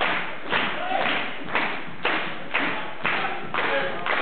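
Jazz band's opening groove: a steady beat of about two hits a second, each with a short ring-out.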